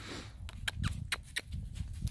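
Steps crunching through dry fallen leaves on the ground, about half a dozen sharp, irregular crackles.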